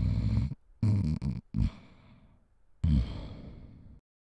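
A man snoring: one snore ends about half a second in, a second comes about a second in with a short catch after it, and a third starts near the end and trails off.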